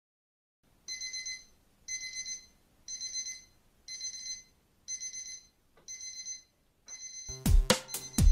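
Electronic alarm beeping: seven short warbling beeps, about one a second, like a digital alarm clock. Music with a beat starts suddenly near the end.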